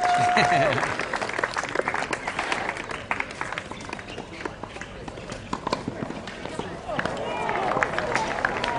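Audience applause with scattered clapping that thins out and fades over the first few seconds, and a long held high note from the crowd that stops about half a second in.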